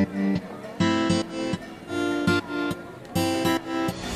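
Background music on acoustic guitar, plucked and strummed notes starting two or three times a second.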